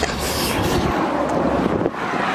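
Wind buffeting the microphone: an irregular low rumble with hiss that drops away sharply near the end.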